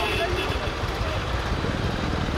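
Steady outdoor background noise: a low rumble with faint, indistinct voices in it.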